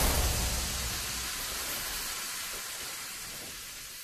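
The decaying tail of a produced intro sound effect: a hissing noise that fades steadily after a loud hit, with a low rumble underneath that dies away about halfway through.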